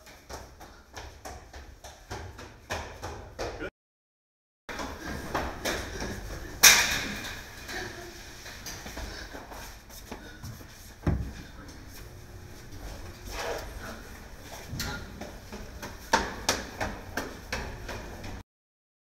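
Footsteps and knocks on stairs, a series of short irregular thuds, with a loud bang about seven seconds in and another thud about four seconds later. The sound drops out completely for about a second near the four-second mark.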